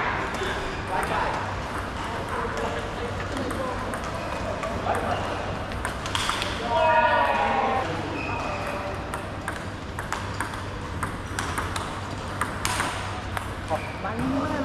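Table tennis rally: the plastic ball clicking off rubber paddles and the tabletop in quick, uneven succession. A man's voice calls out briefly about halfway through.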